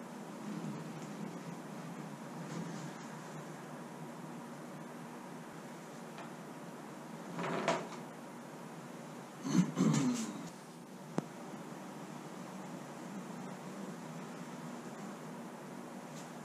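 Steady low hum of a small workshop with faint handling sounds as thickened epoxy putty is squeezed from a plastic bag into the hull seams. About halfway through come two brief squeaky sounds, then a single sharp click.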